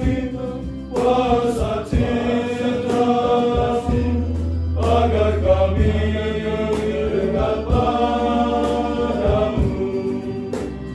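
Male choir singing a hymn with acoustic guitar and violin accompaniment. The voices sing phrases of held notes with short breaks between them.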